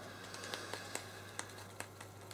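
A paintbrush mixing blue silicone paint in a small plastic cup: faint light clicks and scrapes of the brush against the cup, a few scattered ticks.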